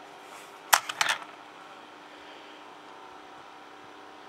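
A few sharp clicks and knocks of a plastic 00 gauge model tanker wagon being handled and set down on a wooden desk: one click a little under a second in, then a quick cluster just after, over a steady faint hum.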